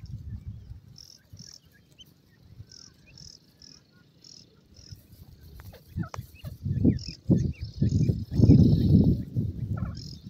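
Short high-pitched chirps repeating about twice a second, with fainter, lower peeping notes. From about six seconds in, loud low rumbling bursts, like wind or handling noise on the microphone, take over and drown them out.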